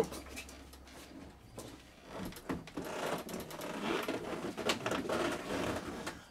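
Rustling and scuffing of a person clambering up into the high cab of a Pinzgauer off-road truck, with a few light knocks, starting about two seconds in.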